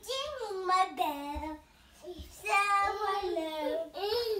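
A toddler girl singing in a high voice: two short phrases with a pause of just under a second between them.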